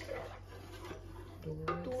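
Faint scrapes and light clinks of a spoon scooping chocolate drink powder and tipping it into an aluminium pot.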